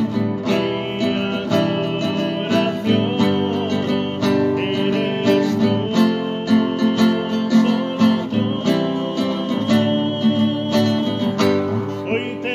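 Instrumental worship music: an acoustic guitar strummed in a steady, even rhythm, with long held notes sounding over it.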